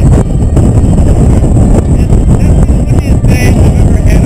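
Wind buffeting the camera's microphone, a loud, steady, low rumble with no letup.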